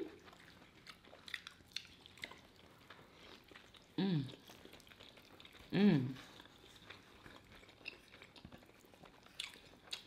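Close-miked chewing and soft wet mouth clicks of people eating pizza, with two hummed "mmm"s of enjoyment about four and six seconds in.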